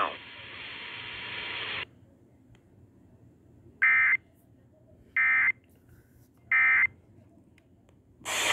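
EAS end-of-message signal played through a radio's speaker: three short, loud, identical bursts of warbling digital data tones, evenly spaced a little over a second apart, closing the tornado warning broadcast. Before them, a steady hiss from the radio stops about two seconds in.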